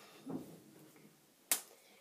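A single sharp hand slap, about one and a half seconds in, as two children's hands strike together in a clapping game.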